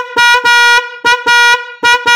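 A 12-volt Rico electric snail horn, tested on its own, sounding a string of short blasts on one steady note, some blasts only a fraction of a second long.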